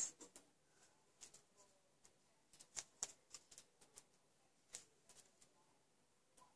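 Near silence broken by a dozen or so faint, irregular clicks and taps: a pointed craft tool picking small self-adhesive gems off their plastic sheet and pressing them onto a card.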